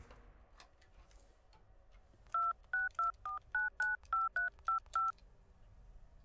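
Touch-tone telephone being dialled: ten short two-tone keypad beeps in quick succession, about three a second, starting about two seconds in.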